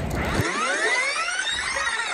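An electronic sweep sound effect: a cluster of tones gliding up in pitch and back down over about two seconds.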